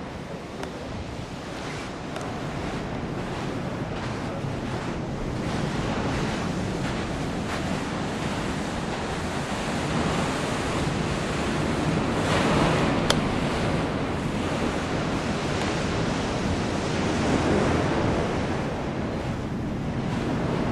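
Ocean surf breaking and washing over rocks, heard from inside a rock tunnel, with wind on the microphone. The wash swells about halfway through and again near the end, and there is one short click a little after the middle.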